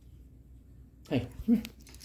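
A tabby house cat making two short vocal calls, about half a second apart, about a second in.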